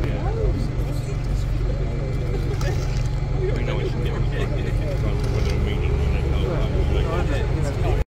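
Crowd chatter: many people talking at once, no single voice standing out, over a steady low rumble.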